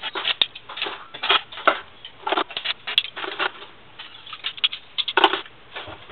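Stainless-steel spoons and forks clinking and clattering as they are scooped up by the handful from a granite countertop and put away, in irregular bunches of sharp metallic clicks.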